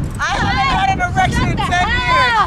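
High-pitched young voices squealing and calling out in rising and falling cries, one of them held as a long note, with wind rumbling on the microphone.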